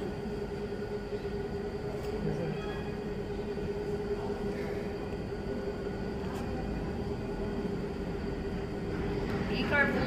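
Steady room hum with a constant drone, like an air conditioner or fan running; a woman starts speaking just before the end.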